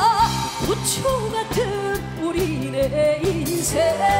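Live trot song from a female singer and band. A held, wavering sung note ends just after the start, a stretch of shorter melodic lines over a steady drum beat follows, and a new held note comes in near the end.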